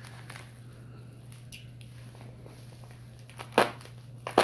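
Faint crinkling of plastic bubble wrap being handled, with a single sharp knock near the end.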